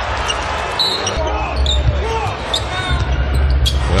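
Basketball arena game sound: crowd noise and voices over a steady low rumble, with a basketball bouncing on the hardwood court.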